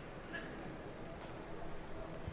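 Faint room ambience: a steady low hum with a few soft clicks.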